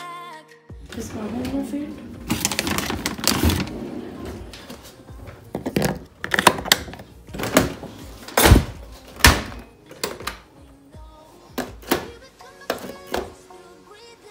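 Glassware and dishes clinking and knocking against one another and a dishwasher rack as they are handled: a series of sharp, irregular clinks and knocks, most frequent in the second half. A background song cuts off suddenly within the first second.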